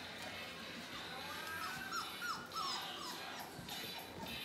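Four-week-old Labrador Retriever puppies whimpering, with a quick run of short, high, falling squeals about halfway through.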